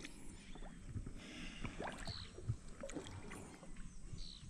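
Faint lapping and small splashes of river water around a wading angler holding a large peacock bass in the water.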